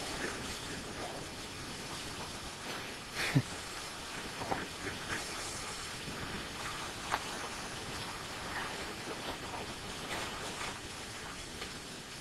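A steady, faint hiss, with a few brief faint sounds, one about three seconds in and others a little later.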